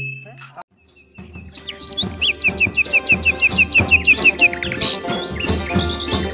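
Folk music fading out, a brief gap, then the end-screen music starts: a steady beat with a rapid run of bird-like chirps, about five a second.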